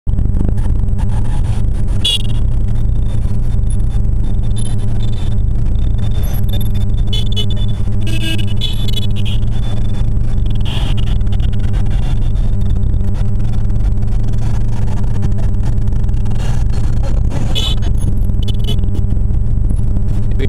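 Motorcycle engine running steadily while the bike is ridden, heard from the rider's seat as a constant low hum.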